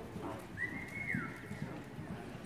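Horse loping on soft arena dirt, its hoofbeats coming as dull thuds, with a high thin whistle-like tone that rises in about a quarter of the way through and holds for about a second.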